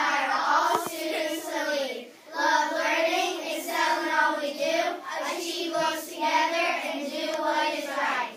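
A group of elementary schoolchildren reciting a pledge together in unison, in sing-song phrases with short pauses about two and five seconds in.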